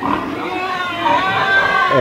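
A chicken calling: one long, drawn-out call that rises in pitch about halfway through.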